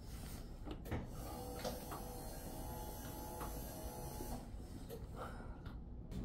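Electric hospital bed motor running steadily for about three and a half seconds as the backrest reclines, with a couple of sharp clicks as it starts.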